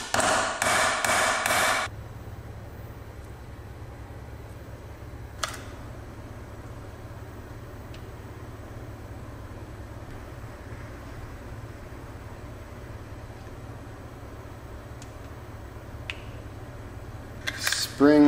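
A few hammer blows in quick succession in the first two seconds, tapping a shift-pin sleeve into the aluminium case of a ZF manual transmission, then one lone tap about five seconds in. A steady low hum runs underneath.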